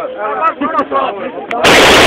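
Automatic gunfire fired into the air: a sudden, very loud continuous burst that breaks in near the end and keeps going.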